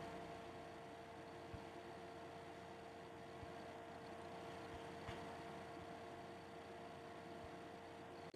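Near silence: faint microphone hiss and room tone with a steady, faint hum, and a few faint ticks.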